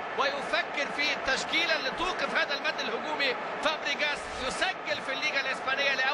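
Only speech: a man talking continuously, as in the football commentary.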